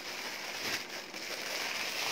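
Clear plastic packaging crinkling and rustling as a bagged denim skirt is handled, with a few faint crackles near the middle.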